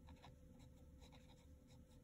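Faint scratching of a Pilot Hi-Tec-C fine-tip gel pen writing on lined notebook paper: a run of short, soft, irregular strokes.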